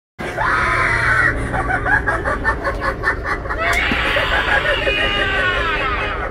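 Seated scarecrow Halloween animatronic playing its scare sound: a high shriek, then a fast stuttering cackle, then a long scream that slides down in pitch.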